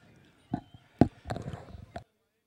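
Racehorses' hooves striking a dirt track in a short run of uneven thuds, the loudest about a second in, as the horses ease up after the finish.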